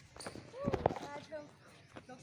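A person's voice with no clear words, gliding up and down, with a few short thuds near the middle.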